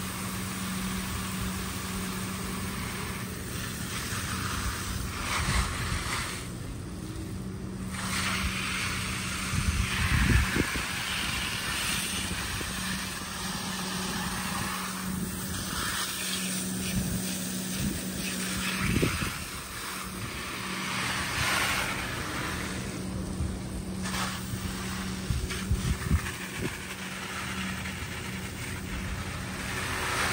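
Garden hose spray nozzle hissing as its spray hits leaves and soil, rising and falling as it is swept over the plants and dropping out briefly twice. A steady low hum runs underneath.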